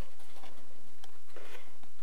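A steady low hum with a few faint light ticks and rustles of fingers shifting a laser-cut cardboard roof panel on glued cardboard.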